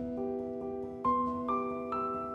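Soft instrumental background music of held, bell-like keyboard notes, with a short rising run of three higher notes in the second half.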